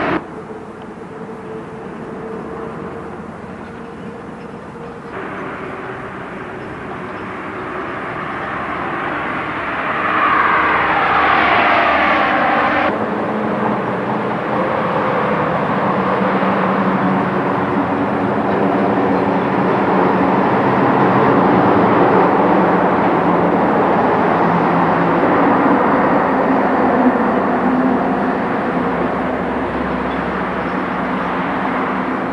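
Steady vehicle noise with a low hum. About ten seconds in, a sound sweeps down in pitch for a few seconds and then breaks off abruptly.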